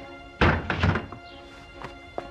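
Wooden lattice door being moved and knocking shut: a loud thunk with a short rattle of several knocks about half a second in, over background music.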